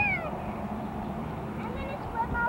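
A young child's high-pitched squeal, falling in pitch, right at the start, then quieter pool-side background.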